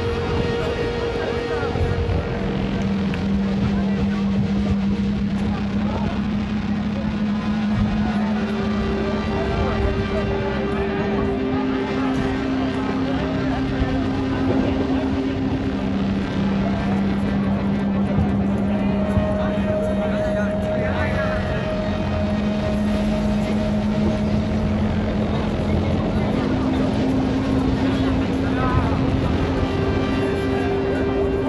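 People talking over a steady rumbling noise, under background music of long held notes that change pitch every few seconds.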